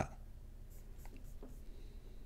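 Quiet room tone with a few faint, short clicks, like a mouse or pen being handled at a desk.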